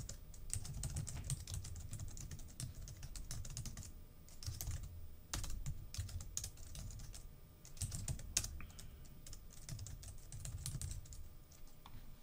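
Quiet typing on a computer keyboard: irregular runs of quick keystrokes with short pauses between them.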